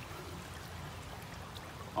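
Creek water running steadily: a faint, even rush of flowing water.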